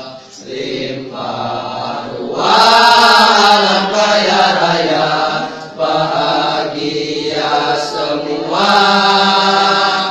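Choir of young men singing together in long held phrases, with short breaks between them. It is loudest about a quarter of the way in and again near the end.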